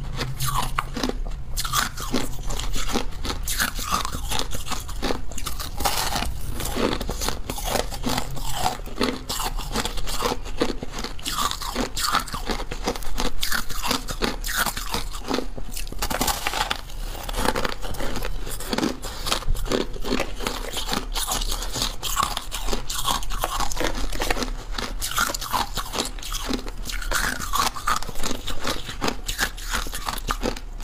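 Ice being bitten and chewed close to the microphone: continuous crunching and crackling with no pause.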